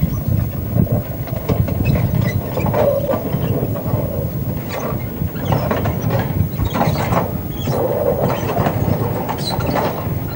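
Narrow-gauge rail-recovery train moving slowly, its wedge sled dragging the old rails off the sleepers: a steady rumble with metal clanks and scrapes. The clanks come several times in the second half.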